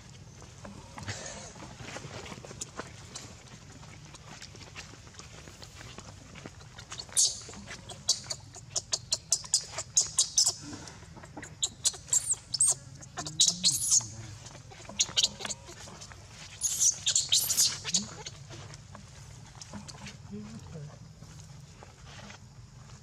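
A newborn macaque screaming in distress in a rapid string of shrill, rising and falling squeals while its mother grips and pulls it about on the ground. The cries come in bursts from about a third of the way in until near the end.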